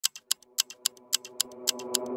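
Sparse intro of a DJ cover of a reggae song: crisp, high percussion clicks about four a second, with a soft held chord slowly swelling underneath.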